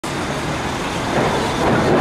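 Steady road traffic noise: a dense rumble and hiss of vehicles running nearby, growing slightly louder after about a second.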